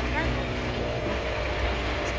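A boat's engine running with a steady low drone.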